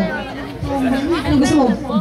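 Only speech: a woman talking into a microphone, with other voices chattering.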